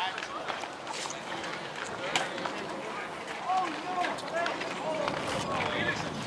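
High-pitched voices of youth players and spectators calling out across the field, the calls rising and falling mostly in the second half. Scattered sharp claps or clicks are heard throughout.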